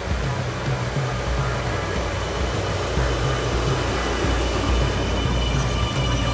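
AgXeed AgBot robot tractor running steadily on rubber tracks while pulling a Lemken Rubin 9 disc harrow through the soil: a low, pulsing engine drone under the rushing noise of the working discs and tracks.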